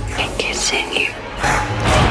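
Trailer sound mix: a whispered voice over a low, droning film score.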